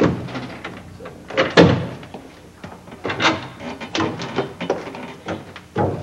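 A run of knocks, bangs and rattles as a window is pushed open and climbed through, with the loudest bangs about a second and a half in and again about three seconds in.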